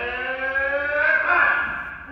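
A person's voice in one long, drawn-out call, rising slowly in pitch and growing louder about a second in.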